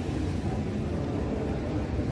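Steady low rumbling noise with no single event standing out.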